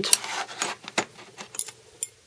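Brass rods of a Spyderco Sharpmaker being pulled out of the clips in its plastic base, giving a few light clicks and metallic ticks, the sharpest about a second in.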